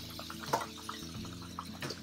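Onions, garlic and peppers sizzling quietly in butter in a stainless frying pan, with two sharp clicks as scallops are spooned in, about half a second in and near the end.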